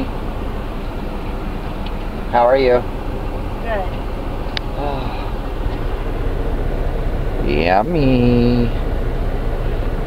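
Steady low rumble of a semi-truck's diesel engine heard from inside the cab, with a few short bursts of voice over it.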